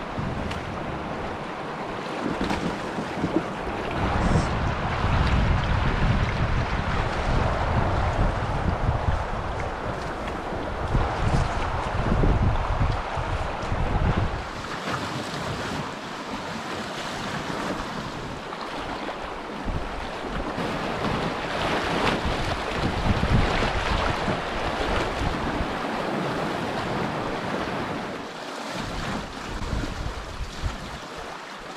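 Fast shallow river water rushing around a canoe, with gusts of wind buffeting the microphone, heaviest about 4 to 14 seconds in and again past the 20-second mark.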